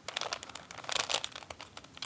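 Layers of a 3x3 Rubik's cube being turned by hand: a quick run of light plastic clicks and rattles, busiest about a second in.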